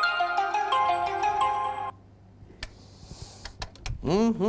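Background music with a bright, repeating melody of struck notes, which stops suddenly about two seconds in; a few faint clicks follow in the quieter second half.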